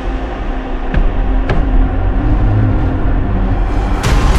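Dark horror trailer score: a loud, low rumbling drone with sustained tones, and two short sharp hits about one and one and a half seconds in.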